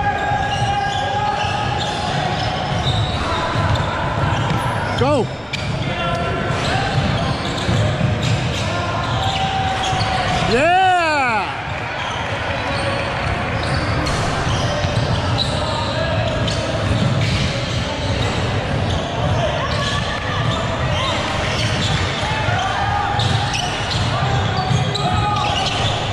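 Basketball bouncing on a hardwood gym floor during play, under a steady din of indistinct voices from players and spectators in a large echoing hall. Twice, about five and eleven seconds in, a short squeal rises and falls in pitch.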